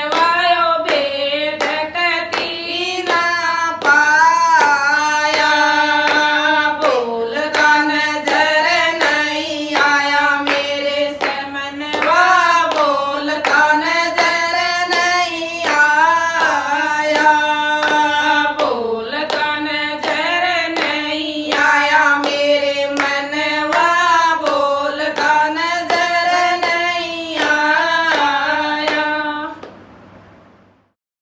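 A small group of women singing a Haryanvi devotional bhajan together, unaccompanied, clapping their hands in a steady beat.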